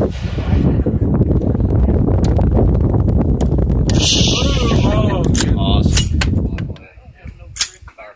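Loud low rumble of wind buffeting the phone's microphone, cutting off suddenly about seven seconds in, with a few sharp clicks.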